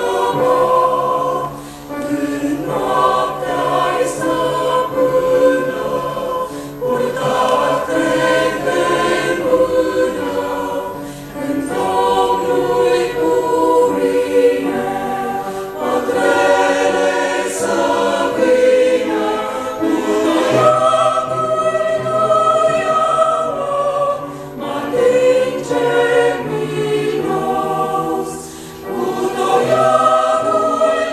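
A choir singing a Christian hymn live, in long held phrases with short breaks between them.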